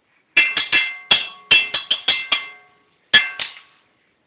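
A young child banging with a drumstick on a hard object that rings: about nine quick, uneven strikes, then a pause and two more, each leaving a brief bell-like ring.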